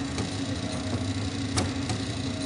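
A small sachet packaging machine running: a steady motor hum with one sharp mechanical clack about one and a half seconds in, part of the machine's repeating bag cycle.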